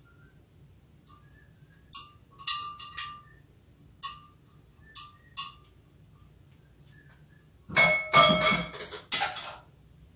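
Kitchenware clinking against a stainless-steel mixing bowl: several light ringing clinks, then a louder run of clattering near the end.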